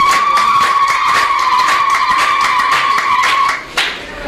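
A woman ululating into a handheld microphone over a PA: one long, high trill held at a nearly steady pitch, cutting off shortly before the end.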